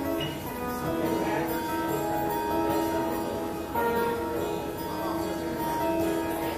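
Solo guitar playing a song's instrumental intro: picked notes that ring on, a new note or chord about every second.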